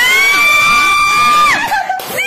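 A person screaming in celebration: one long, high-pitched, loud scream that rises at the start, holds steady, and breaks off about a second and a half in.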